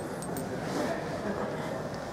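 Indoor showroom background noise: a steady low hiss with faint, indistinct voices in it.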